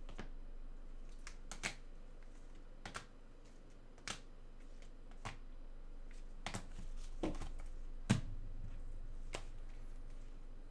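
Hard plastic card holders clicking and tapping against each other as a stack of cased trading cards is flipped through by hand: a dozen or so sharp, irregular clicks, the loudest a little after eight seconds.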